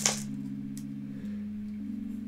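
Soft background music of sustained low notes that shift pitch about a second in and again near the end.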